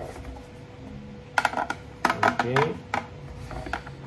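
3D-printed plastic parts of a headset stand clicking and knocking against each other as they are handled and pressed together, with a quick run of sharp clicks about a second and a half in and a few fainter ones near the end. A short voice sound comes in about two seconds in.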